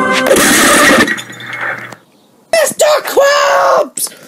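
A loud crash of something shattering, under a second long. After a brief silence, a high-pitched voice cries out.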